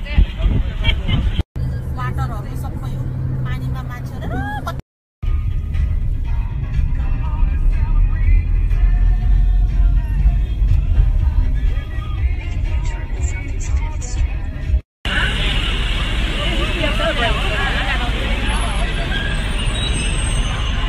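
Short phone-recorded clips cut abruptly one after another, each filled with a low rumble of wind on the microphone and a moving vehicle, with people's voices and music mixed in. Hard cuts drop the sound out briefly about a second and a half in, about five seconds in and near fifteen seconds.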